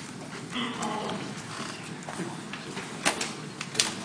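Lecture-hall room noise while students work on an exercise: a faint murmur and rustling, with a brief faint voice about half a second in. Two sharp clicks or knocks, about three seconds in and near the end, are the loudest sounds.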